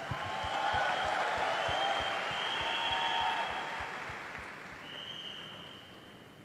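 Audience applauding, building up in the first second and fading out over the last few seconds.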